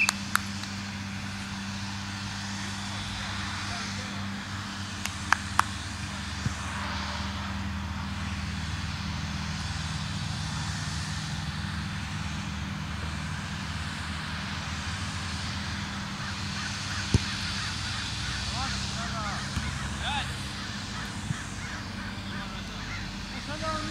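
Outdoor soccer-game ambience: distant shouts of players over a steady low rumble. A few sharp thuds of the ball being kicked stand out, one at the start, two close together about five seconds in and one about seventeen seconds in.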